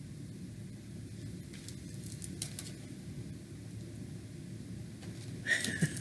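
Quiet room tone with a low steady hum, a few faint clicks about two seconds in, then a woman breaking into laughter in the last half second.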